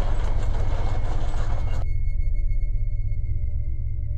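Sound effect of a cartoon robot rover's tracked wheels rolling: a rough, noisy sound lasting about two seconds that cuts off suddenly. It plays over a steady low ambient drone with faint high held tones.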